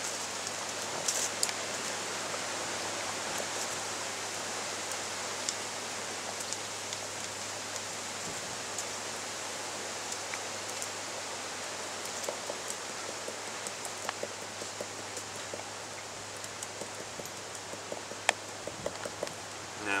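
A steady hiss, with faint scattered crackles and ticks of nettle fibre being peeled from the stem by hand.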